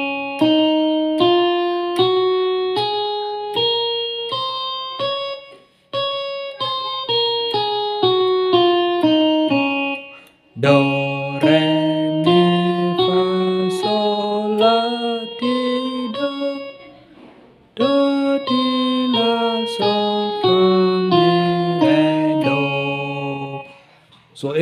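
Digital keyboard playing a C major scale one note at a time, up an octave and back down. About ten seconds in the scale is played again with lower notes added beneath it, rising and falling twice with a short break between.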